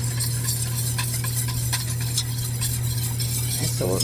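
Wire whisk stirring a cold slurry of cornstarch and water in a stainless steel saucepan, its wires clicking and scraping quickly against the pan, over a steady low hum.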